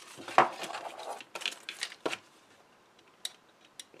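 Small clicks and scrapes of hands working at card and the backing of double-sided tape, with a sharp click about half a second in as the loudest sound. The handling stops after about two seconds, leaving two faint ticks.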